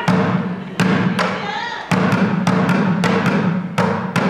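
Bucket drumming: drumsticks striking upturned buckets. There are a few spaced hits, then a quick even run of strokes, about five a second, from about two seconds in.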